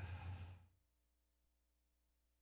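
A brief breathy exhale over the sound system's mains hum, which cuts off abruptly about two-thirds of a second in. Near-dead silence follows, as if the microphone feed has been muted or gated.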